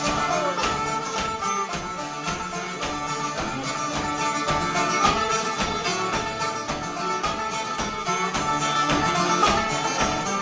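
Live acoustic string band playing an instrumental break: fiddle over strummed acoustic guitars, with a steady beat.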